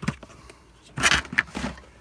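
Small hard-plastic toy tank being handled and set down on a wooden work board: a click at the start, then a short cluster of plastic clatter and scraping about a second in.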